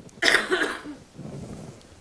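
A person's short, throaty cough-like burst of breath about a quarter second in, followed by a softer breath.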